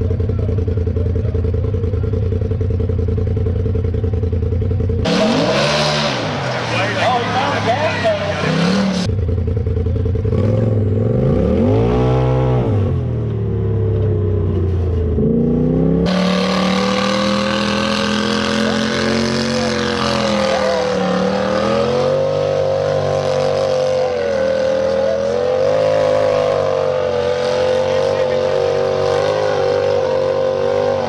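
Rock bouncer buggy engines at full throttle in a run of cut-together race clips: steady running at first, then revs rising and falling repeatedly between about 5 and 16 seconds, then held high and wavering through a hill climb.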